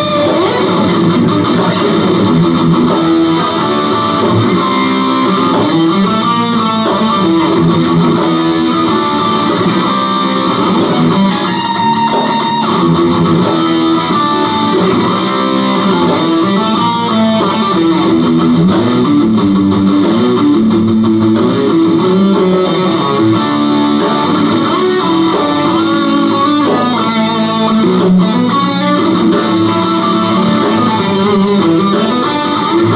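Ibanez RG electric guitar playing a fast instrumental rock lead of quick note runs over a backing track.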